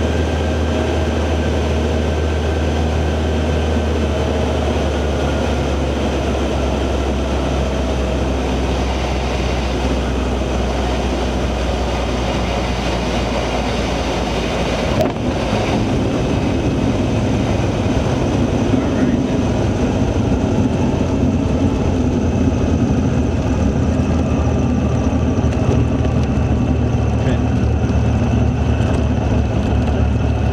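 Cessna 182G's engine and propeller running at low power, heard from inside the cabin. About halfway through, the wheels touch down with a brief knock, and a rough rumble of tyres rolling on the runway joins the engine as the plane rolls out.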